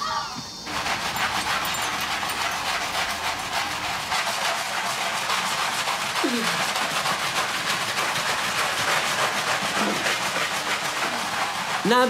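Wet cloths scrubbed back and forth on a tiled floor: a steady, scratchy hiss, with one short falling voice-like sound about six seconds in.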